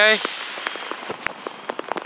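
Rain falling, with many irregular sharp ticks of raindrops striking close by.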